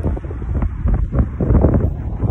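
Wind buffeting a phone's microphone: a loud, low rumble that surges and drops unevenly.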